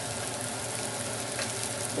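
Crumbled bacon, onions and garlic frying in butter in a small saucepan: a steady sizzle.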